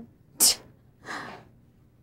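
A sharp, loud burst of breath from a person, then a softer breathy exhale about half a second later.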